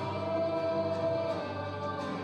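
A children's choir and congregation singing a gospel song with musical accompaniment, one note held for about a second near the start.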